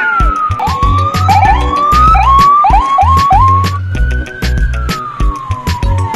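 Police siren wailing: a slow falling tone, then a quick run of short rising whoops in the middle, then a long fall again. Background music with a steady beat plays underneath.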